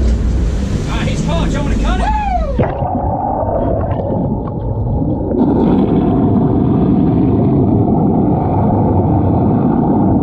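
Open-air boat engine and water wash on the deck of a sportfishing boat, with a few short swooping sounds, then the sound suddenly turns dull and muffled: a boat's engines and rushing water heard underwater, a steady rumble that gets louder about halfway through.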